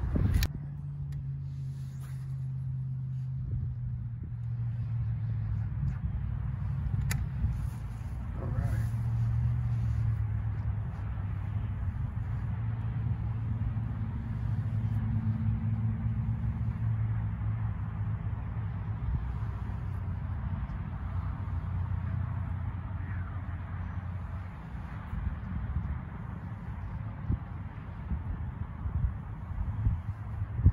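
Wind buffeting the microphone outdoors, heard as a steady low rumble, with a single sharp click about seven seconds in.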